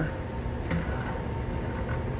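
A few faint, short clicks of parts being handled, over a steady low background hum.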